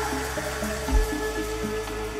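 Live ambient electronic music played on hardware synthesizers and a drum machine: a held synth tone and low stepping bass notes, with a single kick drum about a second in.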